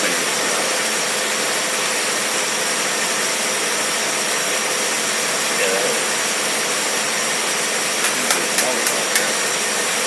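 Test-stand engine running steadily on a single-barrel Rochester carburetor, an even rushing sound with a thin high whine over it. A few sharp clicks come about eight to nine seconds in.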